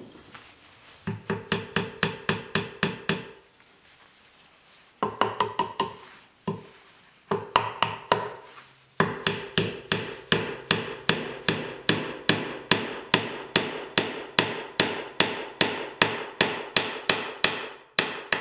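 Small steel-headed hammer tapping a thin wooden wedge into the top of a stool leg's through-tenon, wedging the joint tight. Short quick bursts of light taps at first, then a steady run of taps about three a second from about nine seconds in.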